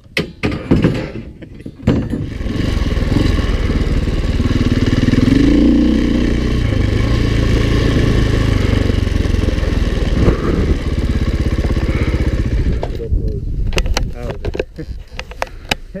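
Dirt bike engine running as the bike is ridden: a steady drone with a brief rise in pitch about five seconds in. Knocks and clatter in the first two seconds and again after about thirteen seconds, once the engine sound drops away.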